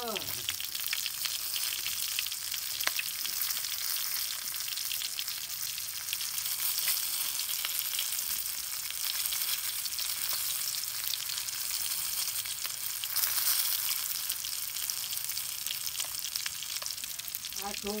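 A whole walking catfish frying in hot oil in a metal wok: steady sizzling with a dense patter of small crackles, a little louder about thirteen seconds in.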